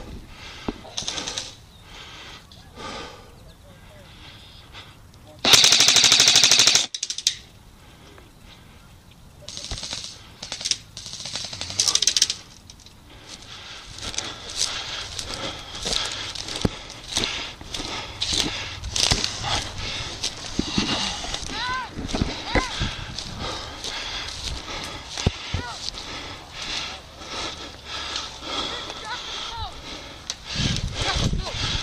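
Airsoft rifle firing a loud full-auto burst of about a second and a half, close to the microphone, followed a few seconds later by shorter, weaker bursts. Through the rest come scattered clicks and rustling in grass as the player moves.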